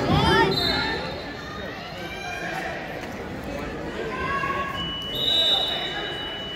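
Coaches and spectators shouting at a wrestling match, loudest in the first second. Near the end a steady high-pitched tone starts and holds.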